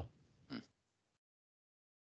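Near silence in video-call audio, broken by one brief faint sound about half a second in, such as a breath or small mouth noise. About a second in, the audio cuts to dead silence.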